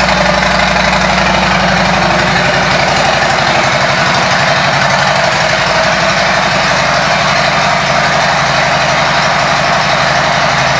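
2018 Harley-Davidson Street Glide Special's Milwaukee-Eight V-twin idling steadily through an aftermarket exhaust, with an even, rapid pulse.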